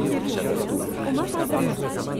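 Indistinct chatter of a group of people, several voices talking over one another.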